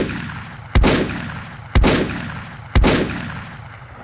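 A sound-effect sting of heavy gunshot-like booms, one a second, each dying away in a long echoing tail.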